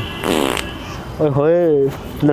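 A man's fake crying: a short, breathy snort or sniff, then about a second later one drawn-out wailing vowel that rises and falls in pitch.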